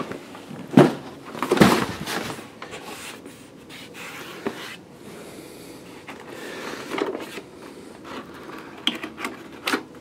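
Handling of a cardboard box and loose papers: two loud knocks about a second and two seconds in, scraping and rustling in between, and a quick run of light clicks and taps near the end as the box's end flap is worked open.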